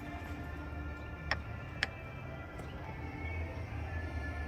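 Two short clicks about half a second apart as the spare-tire winch tool is turned through the cargo-floor access hole, over faint steady background music and a low hum.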